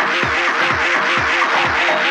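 Instrumental Eurodance club track: a steady four-on-the-floor kick drum at about two beats a second under a repeating staccato synth riff and bright hi-hats.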